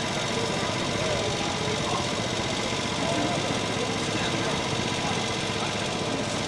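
Faint, distant voices calling now and then over a steady, even background noise.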